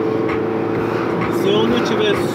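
A song with sung vocals playing on the car stereo, over the steady engine and road noise inside the moving car's cabin.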